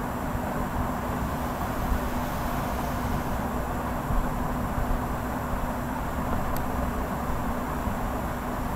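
Steady background hiss with a constant low electrical-sounding hum, the room and microphone noise of the recording.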